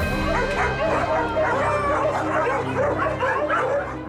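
Many dogs barking and yapping at once, their calls overlapping. Background music with sustained low notes runs beneath.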